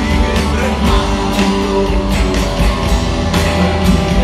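Live rock band playing, with a strummed acoustic guitar to the fore over a steady drum beat.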